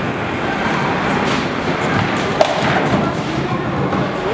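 Bowling ball rolling down the lane with a steady rumble, then one sharp crack about two and a half seconds in as it hits the pins.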